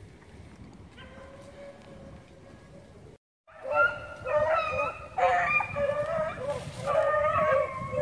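A pack of rabbit hounds baying as they run a rabbit's trail, faint at first, then louder and closer after a brief dropout just past three seconds, several dogs' voices overlapping.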